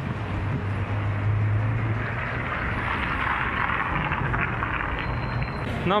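Outdoor road traffic noise: a low engine hum in the first couple of seconds, then a rushing sound that swells in the middle and eases off, like a vehicle passing.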